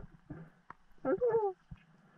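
A diver's muffled vocal sound underwater, one short falling voiced call about a second in, over a low steady hum, with a few sharp clicks.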